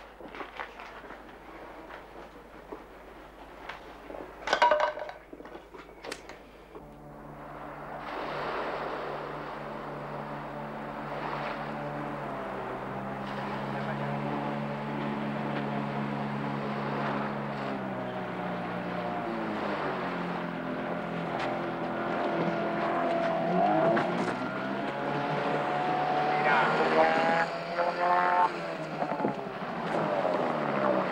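Small outboard motor on an inflatable boat running steadily, its pitch shifting and gliding in the later seconds. It comes in after a quieter opening stretch that holds a couple of sharp knocks.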